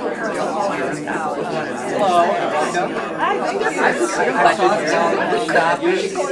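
Many people talking at once: overlapping conversations of a group split into small discussions around a room.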